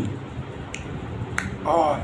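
Two sharp mouth clicks from lip-smacking while chewing, then a short hummed "mm" near the end.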